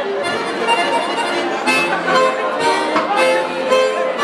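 A live merengue típico band strikes up, with an accordion playing a fast line of short notes over steady hand-drum and percussion strokes.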